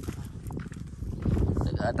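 Footsteps on dry, sandy ground with wind rumbling on the microphone, heavier in the second half.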